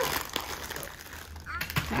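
Quiet crinkling of plastic zip-top bags as play dough is kneaded inside them, with a brief voice about one and a half seconds in.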